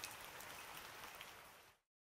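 Rain ambience: a steady patter of rain with a few drop clicks, fading out and going fully silent near the end.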